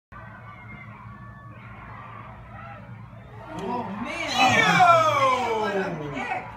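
A person's voice shouting one loud, long, drawn-out call that falls steadily in pitch over about two seconds, starting a little past halfway, over faint background voices of onlookers.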